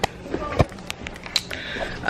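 Handling noise from a phone camera being moved about: scattered light clicks and knocks over a steady low hum.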